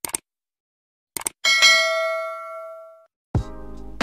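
Subscribe-button animation sound effect: two quick pairs of mouse clicks, then a bright notification-bell ding that rings out and fades over about a second and a half. Music starts near the end.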